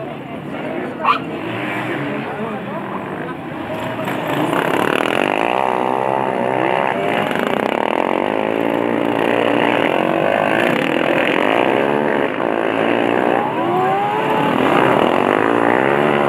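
Engines of several racing ride-on lawnmowers revving as the pack passes, getting louder about four seconds in, with many overlapping pitches rising and falling as they accelerate and lift off through the bend. A sharp, brief sound stands out near one second in.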